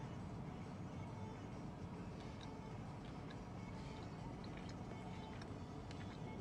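Faint chewing of a bite of sugar cookie, with small scattered mouth clicks, over a low steady hum.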